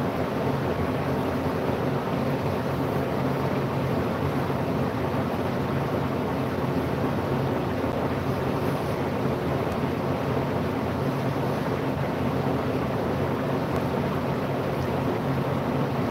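Steady, loud hiss with a low hum underneath: machine-like room noise that starts abruptly just before and holds unchanged.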